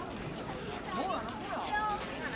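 Nearby passers-by talking over the background hubbub of a crowd walking outdoors.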